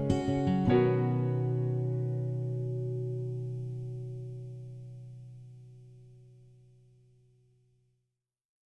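Acoustic guitar: a few last strums, then a final chord struck just under a second in and left to ring, fading slowly away over several seconds.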